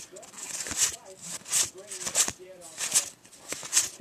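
Magic: The Gathering cards being flipped one by one through a freshly opened booster pack, a soft papery swish about every three-quarters of a second, under a faint mumbling voice.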